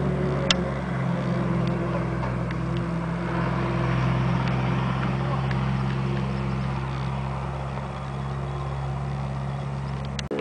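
An engine running steadily with a low, even hum. A single sharp click comes about half a second in.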